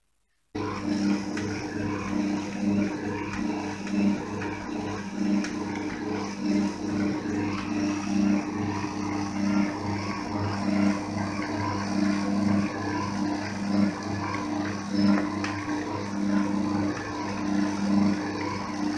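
Kitchen stand mixer's electric motor running with the dough hook kneading stiff bread dough: a steady motor hum that wavers in loudness as the dough is worked. It starts about half a second in.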